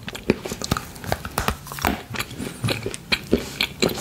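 Close-miked chewing of chocolate, with irregular crisp mouth clicks, about two or three a second.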